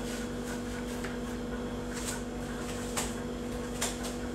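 A steady low hum with a fainter higher overtone, over a faint hiss, broken by a few faint clicks about two, three and nearly four seconds in.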